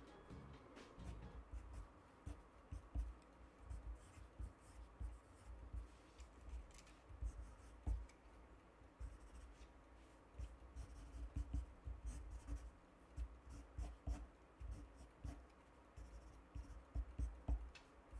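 Faint pen strokes scratching on paper as a cartoon is drawn, in short irregular bursts, with soft low bumps of the hand and paper on the table.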